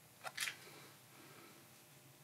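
Two quick clicks about a quarter and half a second in as fingers handle a plastic model diesel locomotive on a tabletop, then faint room hiss.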